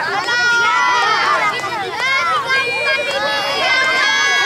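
A group of children shouting and calling out all at once, many high voices overlapping, with some long drawn-out calls near the end.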